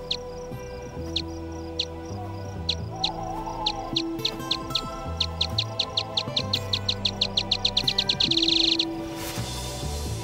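Daubenton's bat echolocation calls, brought down to audible pitch as clicking squeaks. They are spaced at first, then come faster and faster and merge into a rapid buzz near the end that cuts off suddenly: the bat homing in on a flying insect. Low sustained music tones run underneath.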